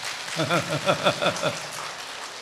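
A man laughing: a quick run of about eight short 'ha' pulses, each falling in pitch, starting about half a second in and stopping about a second later.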